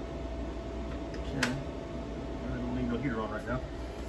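Steady low electrical hum with a faint, constant high whine, and one sharp click about a second and a half in; a man starts speaking near the end.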